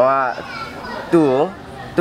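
Speech: a man talking in Burmese in two short phrases, the second about a second in.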